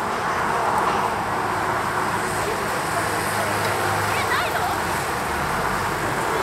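Steady hubbub of a busy crowd, many people talking at once with no single voice standing out.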